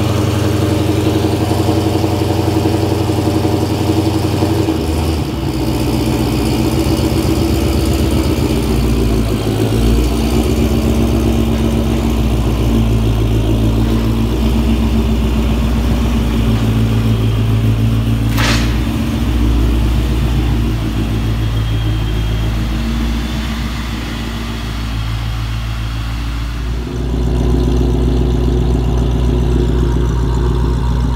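The supercharged 6.4-litre (392) Hemi V8 of a Dodge Challenger idling loud and steady, with a single sharp click about two-thirds of the way through.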